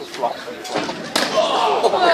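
Crowd voices shouting, with one sharp impact in the wrestling ring a little past a second in, after which the crowd grows louder.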